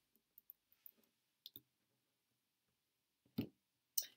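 Faint, scattered clicks of tarot cards being handled on a wooden table, with one louder short sound about three and a half seconds in.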